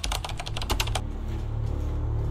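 Computer-keyboard typing sound effect, a rapid run of about ten keystrokes in a second that stops about a second in, followed by a low steady music drone.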